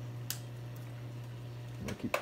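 Steady low hum of a reef aquarium's pumps running, with a single sharp click about a quarter of a second in.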